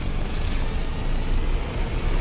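Film sound effects: a steady, loud low rumble with a hiss over it, the effects for a figure flying up through smoke and lightning.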